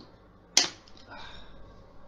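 A single sharp tap about half a second in, followed by faint rustling.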